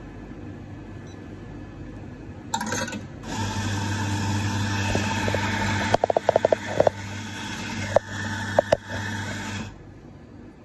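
Victoria Arduino Black Eagle Gravitech espresso machine running water out through a hose into a glass: a steady pump hum under a hiss of rushing water. It starts after a short burst about three seconds in and cuts off just before the end, with a quick run of clicks a little past halfway and a few more clicks near the end.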